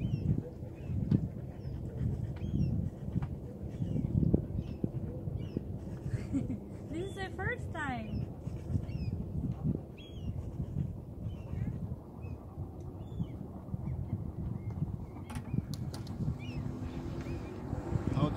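Outdoor waterside ambience: a steady low rumble with scattered short bird chirps, and a honking waterbird call about seven seconds in.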